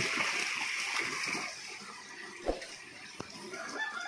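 Handling noise from a small plastic bag of steel balls held in the fingers: soft rustling of the plastic and shifting balls that fades after the first couple of seconds, with a short knock about two and a half seconds in and a faint click shortly after.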